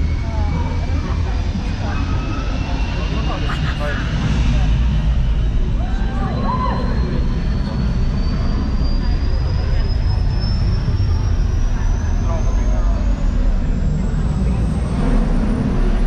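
A steady, loud rumble with a thin whine above it that rises slowly and evenly in pitch all the way through, like a jet engine spooling up.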